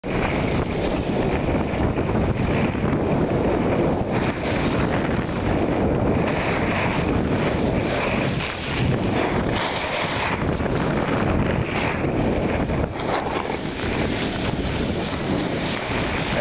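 Wind rushing over the microphone of a camera carried downhill by a skier, mixed with the hiss of skis sliding on snow.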